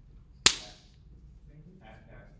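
A single sharp smack about half a second in, with a short ringing tail that dies away quickly.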